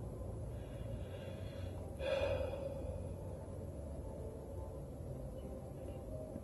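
Low, steady room rumble with a single soft breath from the person filming close to the microphone, about two seconds in.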